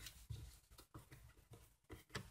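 Near silence: faint room tone with a few soft, small clicks.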